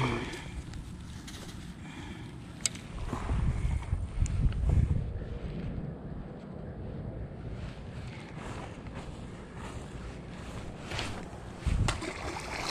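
Wind rumbling on the microphone, with a few sharp handling clicks and louder gusts a few seconds in. Near the end comes a short splash as a largemouth bass is tossed back into the pond.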